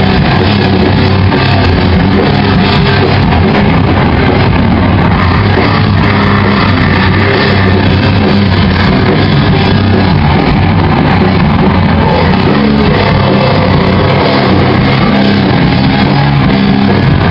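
Live rock band playing loudly and without a break: electric guitars over a drum kit.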